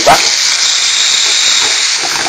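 Whole octopuses searing in hot olive oil and melted anchovies in a metal pan, a steady sizzling hiss as they start to curl in their first cooking.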